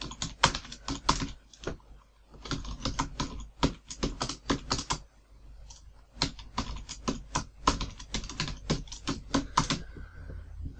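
Computer keyboard typing in quick runs of keystrokes, pausing briefly about two seconds in and again around five seconds in.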